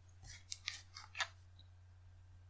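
About five faint, short clicks within the first second and a half, over a steady low electrical hum.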